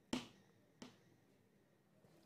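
Near silence broken by two short faint clicks: one just after the start and a weaker one under a second in.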